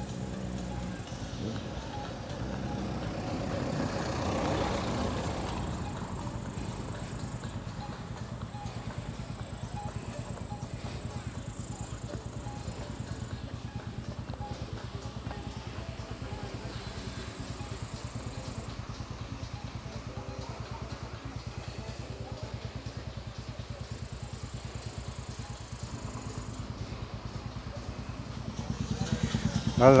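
A car drives down past on a concrete lane, its sound swelling and fading about four to five seconds in, over a steady low rumble.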